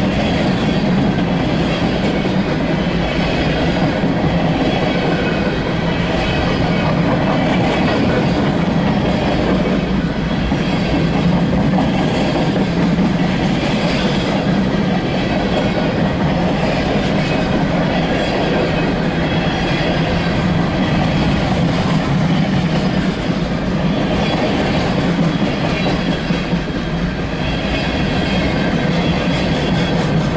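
Freight train boxcars rolling steadily past at close range: a continuous rumble of steel wheels on the rails, with clatter over the rail joints.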